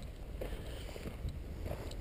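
Low rumble of wind and movement on the microphone while walking on a snowy road, with a few faint footsteps in the snow.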